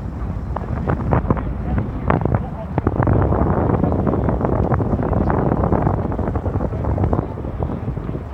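Wind buffeting the camera microphone in a low, steady rumble, over the voices of passers-by and scattered short knocks.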